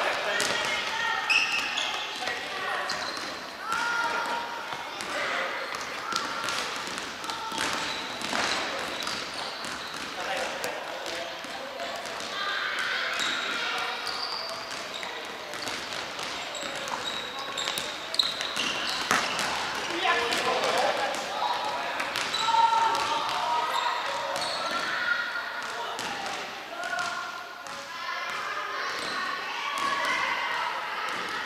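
Futsal being played in a large sports hall: the ball is kicked and bounces on the wooden floor in repeated sharp knocks, and players call out to each other.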